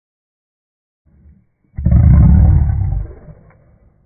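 XL pit bull giving one loud, deep, drawn-out bark lasting about a second and a half, with a faint grunt just before it.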